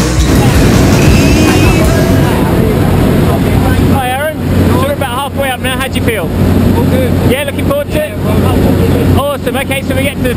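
Loud, steady drone of a skydiving aircraft's engine and propeller heard from inside the cabin on the climb to altitude.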